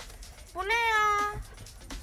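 A single meow-like call, a little under a second long, with a fairly level pitch that sags slightly at the end.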